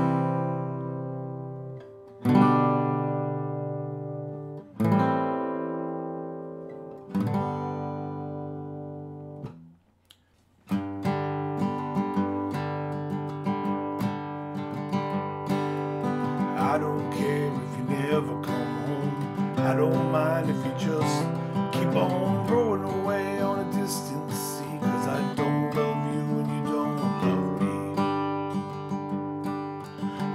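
Steel-string acoustic guitar with a capo: four single strummed chords, each left to ring and fade, about two and a half seconds apart, going through the chorus changes C, G over B, A minor seven, G. After a short pause it moves into continuous rhythmic strumming of the song's progression.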